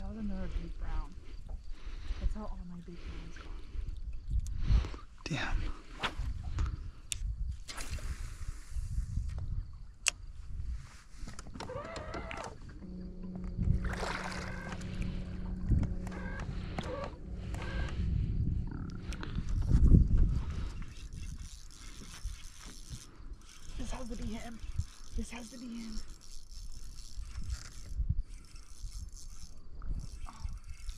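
Indistinct, intermittent voices over a steady low rumble, with scattered short knocks and clicks throughout.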